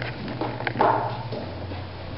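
A church congregation moving about and gathering, with scattered footsteps, shuffling and rustling. A brief vocal sound comes about a second in, over a low steady hum that drops in pitch about one and a half seconds in.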